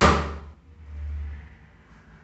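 A single sharp hit that rings out over about half a second, followed by a faint low hum.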